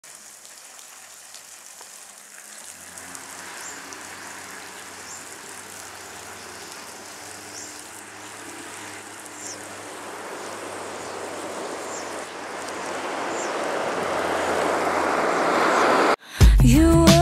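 An intro noise swell: a hiss that builds steadily louder throughout, with a low hum joining about two and a half seconds in and faint high chirps recurring every second or so, cutting off suddenly at the end.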